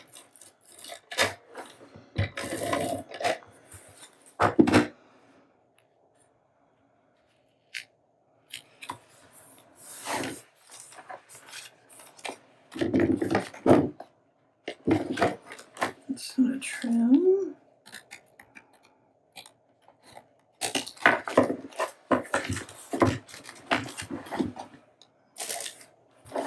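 Paper and tape handling on a craft table: tape pulled off a roll and torn, and paper pieces rustled, pressed down and set aside, in short separate bursts.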